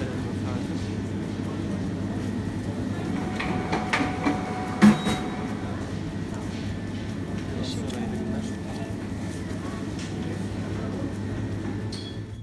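Steady low machine hum at a supermarket butcher counter, with a few clicks of handling in the middle and one sharp knock just before five seconds in.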